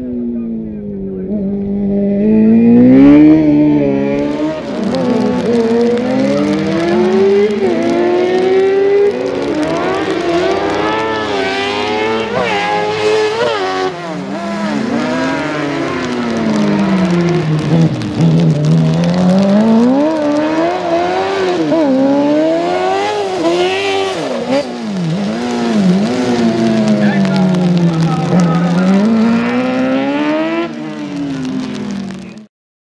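A single-seater racing buggy's engine, revving hard as it accelerates and then dropping in pitch as it slows, over and over. It is loudest about three seconds in.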